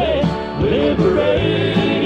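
Southern gospel male quartet singing in close harmony over instrumental accompaniment.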